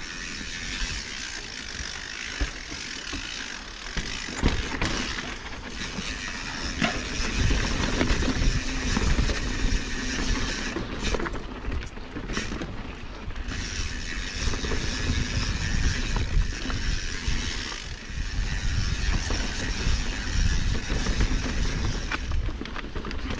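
Mountain bike's freewheel hub clicking while coasting, over the rumble and knocks of the tyres and frame on rocky trail. The clicking breaks off briefly a little past halfway.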